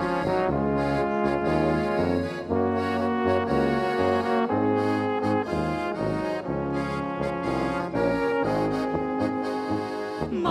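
Czech brass-band (dechovka) music: trumpet and baritone horn playing the tune over tuba bass and accordion, with no singing.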